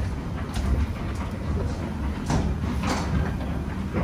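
Underground metro station ambience: a steady low rumble, with a few light knocks and scuffs of steps on metal floor plates and escalator.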